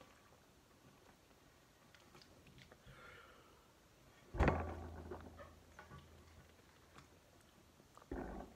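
Faint sipping and swallowing as a person drinks from a plastic sports-drink bottle, with one sudden thump about four and a half seconds in.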